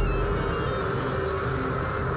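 Station-ident jingle music: a held chord over a low rumble, ringing out and slowly fading.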